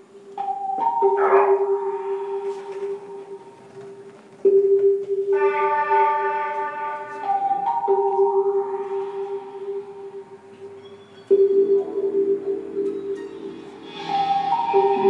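Electric guitar played live through effects: a low held note re-struck about every three and a half seconds, with higher ringing notes sustained over it and no beat.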